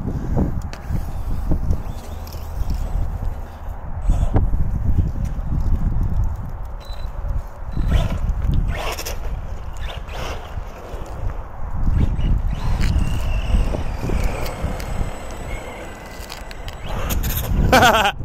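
Battery-electric radio-controlled basher truck driving on asphalt, its motor whine faint and falling in pitch in the later part, under heavy low wind rumble on the phone's microphone. A laugh at the very end.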